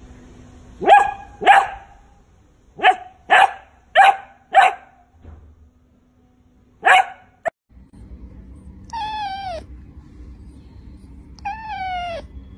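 Beagle puppy giving short, high barks, seven in the first seven seconds, in pairs and a run of four. Then a kitten meows twice, each call drawn out with a wavering, falling pitch.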